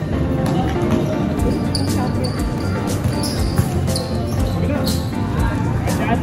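A basketball is dribbled on a concrete court, its bounces heard over background music, with voices mixed in.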